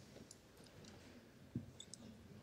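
Near silence in a hall, with a few faint clicks and one soft knock about one and a half seconds in.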